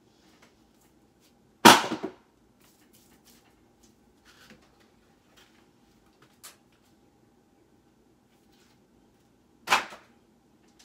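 A stack of books set down with a sharp thud about a second and a half in, then faint small handling clicks, and another sharp knock near the end.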